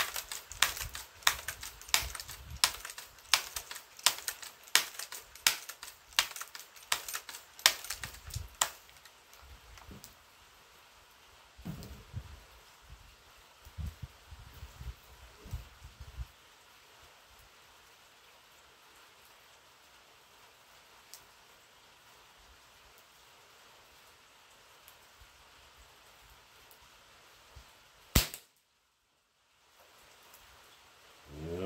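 A pellet air rifle being handled: a quick run of sharp clicks, about two a second, for the first nine seconds, then a few soft knocks. Near the end a single sharp crack, a shot from the air rifle.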